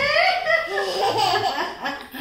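A toddler laughing out loud in a high voice that rises and wavers in pitch.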